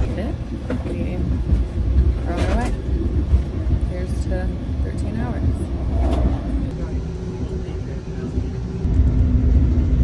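Low, steady rumble inside an Amtrak passenger car, with faint voices of other passengers now and then. The rumble drops for a few seconds and comes back louder near the end.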